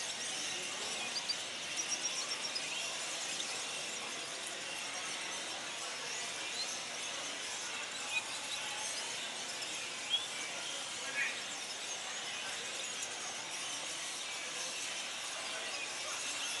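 Many caged show birds, goldfinches among them, chirping and twittering all at once: a dense, high chatter of many small calls, with a few louder chirps standing out.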